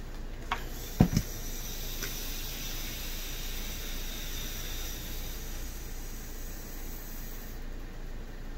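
Steam iron hissing steadily, stopping abruptly shortly before the end. Two short knocks come near the start, the louder one about a second in.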